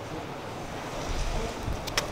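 Wind buffeting the microphone: a steady noisy hiss with a low rumble that swells about a second in, and a faint click near the end.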